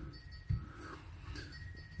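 Quiet room tone with a single soft, low thump about half a second in.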